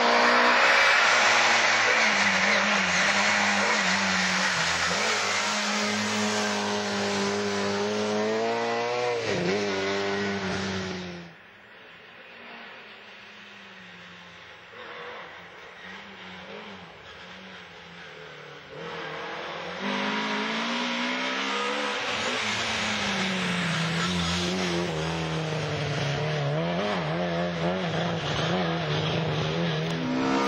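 Rally car engine at high revs, its pitch rising and falling through gear changes and lifts. About a third of the way in the sound drops abruptly to a fainter, more distant engine. It comes back loud and close, with the revs climbing again near the end.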